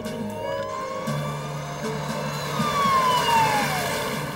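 Police car siren wailing: one slow rise in pitch, then a fall near the end.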